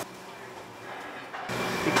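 Steady background hum of a restaurant kitchen, with no single event standing out; it gets louder about one and a half seconds in.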